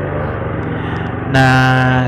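Motorstar Xplorer Z200S motorcycle's single-cylinder 200 cc four-stroke engine idling steadily while the bike stands still, with a man's voice coming in about two-thirds of the way through.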